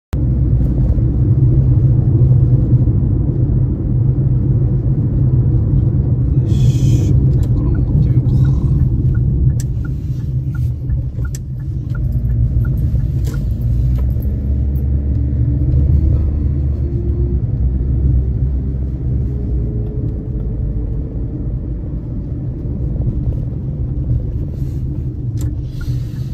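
Steady low rumble of a car moving, engine and road noise heard from inside the cabin.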